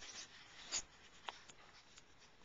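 Faint handling noise on a pocket camcorder: a short scratchy rub about a second in, then a light click.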